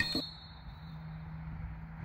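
Quiet outdoor background on a playing field, with a faint steady low hum and no distinct event.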